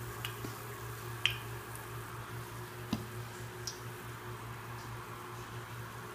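Olive oil heating in a frying pan on a gas burner: a few faint ticks over a steady low hum.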